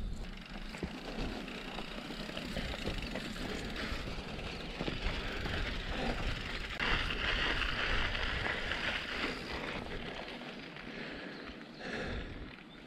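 Canyon Torque mountain bike rolling over grass and then a dirt and gravel path: steady tyre noise and rattle, loudest partway through on the gravel, with wind rumble on the camera microphone.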